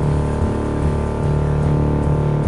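Live rock band playing loudly: electric guitars over low bass notes that shift every half second or so.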